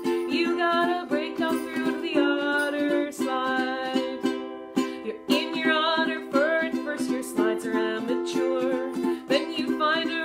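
Ukulele strummed in steady chords while a woman sings a children's song along with it, with a short break about halfway through.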